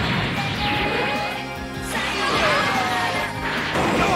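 Anime action soundtrack: dramatic music under crash and impact sound effects, with a sudden crash near the middle and another shortly after three seconds.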